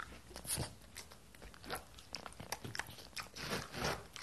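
A French bulldog crunching and chewing a small crunchy snack, a run of irregular, crackling crunches.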